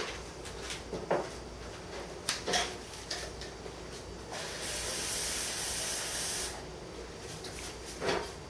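A few light knocks, then a kitchen tap running for about two seconds before it is turned off.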